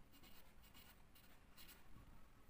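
Faint scratching of a felt-tip marker writing on paper, in a series of short strokes as a word is written out.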